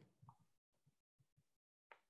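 Near silence, broken only by a few faint, very short blips.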